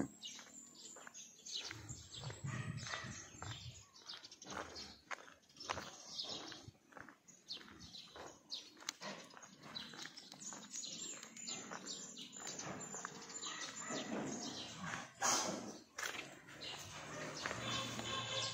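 Footsteps on a concrete path at a steady walking pace, about two steps a second, with grunts from pigs in the pens.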